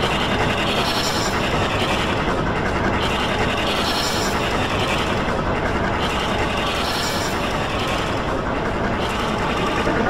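A dense, distorted clatter of many overlapping copies of an effects-processed soundtrack layered on top of one another. It runs at a steady loudness, with a hissy sweep in the highs about every three seconds.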